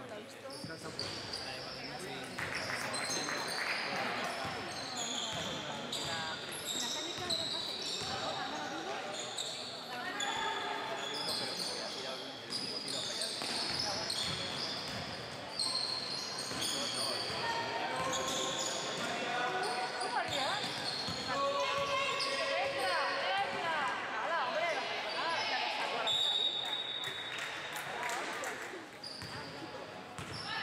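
Basketball game sounds in a sports hall: a ball bouncing on the court, many short high sneaker squeaks on the floor, and players' and coaches' voices calling out.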